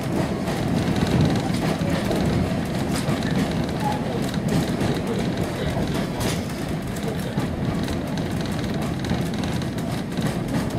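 A railway carriage running along the track, heard from inside the coach: a steady rumble with scattered sharp clicks of the wheels.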